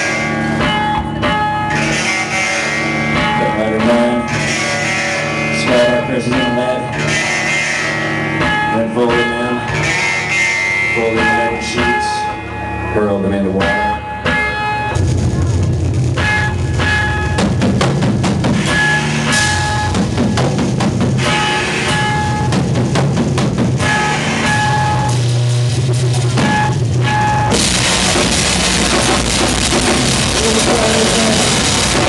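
Live avant-noise rock band playing loudly, with drum kit and electric guitar. About halfway through the music turns heavier and denser in the low end, and a bright wash fills the top in the last couple of seconds.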